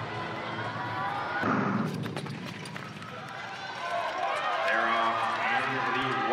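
Ice-arena crowd noise at the start of a short track speed skating race: a sharp start signal about a second and a half in, quick clicks after it, and then a voice over the crowd din.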